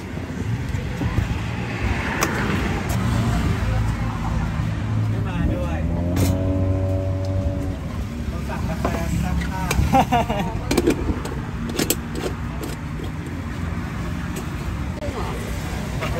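Road traffic: a vehicle engine hums steadily, and one vehicle sounds louder about six to eight seconds in. A few sharp clinks of glassware and utensils come near the middle.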